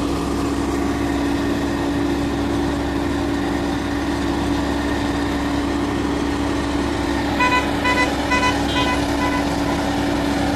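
Asphalt paver's diesel engine running steadily. Near the end, a vehicle gives a run of about six short, high beeps.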